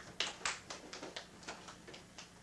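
A string of sharp clicks and taps, about four a second and unevenly spaced, the loudest in the first half second.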